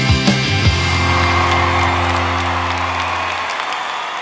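Rock music with a driving beat that stops under a second in, leaving a final chord that rings and fades away over about three seconds, with a crowd applauding and cheering underneath.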